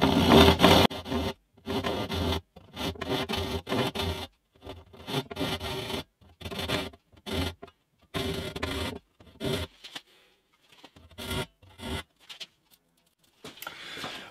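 Small hand saw cutting a guitar's binding strip flush at its joint: a run of short rasping saw strokes with brief pauses between them. The strokes stop about two seconds before the end.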